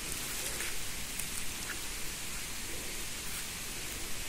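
A steady hiss of background noise, with a few faint crackles of dry conifer needles and litter as a bolete mushroom is worked loose from the forest floor.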